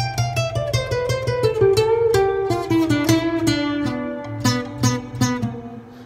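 Nylon-string classical guitar played fingerstyle: a quick run of plucked notes that falls steadily in pitch over a repeated low bass note, fading toward the end.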